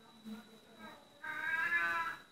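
A faint, drawn-out pitched call in the background, about a second long and starting a little past the middle, voice-like or animal-like, with a couple of fainter short sounds before it.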